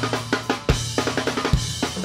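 Live funk band playing: a drum kit struck with sticks, with sharp snare and kick hits and cymbals several times a second, over a sustained electric bass line.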